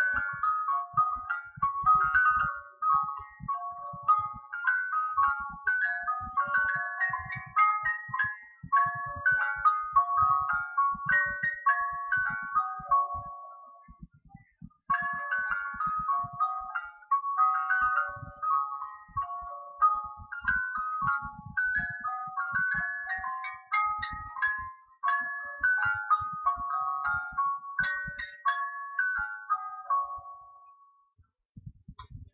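Christmas-tree biscuit tin's music box playing a chiming tune while the tin turns. The tune runs through once, stops about halfway through with a pause of a second or so, then starts over. A faint low clicking runs underneath.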